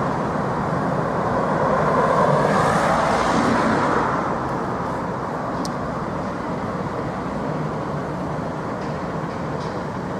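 Street traffic noise, with one vehicle passing close, loudest about two to four seconds in, then a steadier rumble of traffic.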